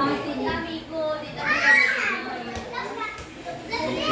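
Voices of a family at the table, including children, talking over one another; a child's higher voice is loudest about halfway through.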